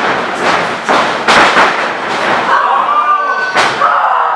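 Thuds of wrestlers' bodies and feet on a wrestling ring's mat, several in the first two seconds with the loudest about a second and a half in, and one more near the end. The crowd shouts in between.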